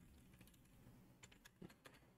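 Near silence with a few faint computer keyboard keystrokes in the second half, as a number is typed in.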